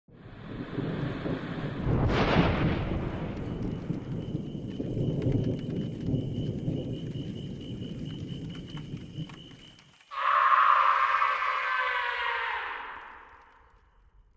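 Thunderstorm sound effect: rolling thunder with a loud crack about two seconds in, over a rain-like hiss with scattered sharp crackles. About ten seconds in it gives way abruptly to a different pitched, layered sting that fades out over about three seconds.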